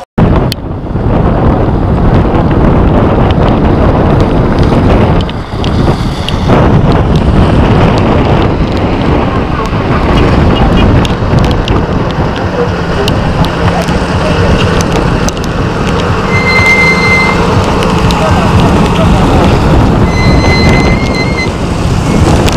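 Wind buffeting a phone microphone in wet, stormy weather: a loud, rough, unbroken rush. Near the end there are two short high-pitched tones.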